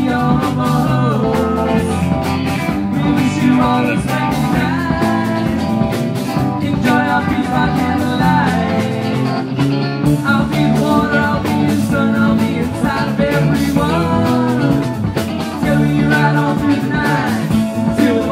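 Live rock band playing a song, with guitar and drums at a steady beat and bending lead notes.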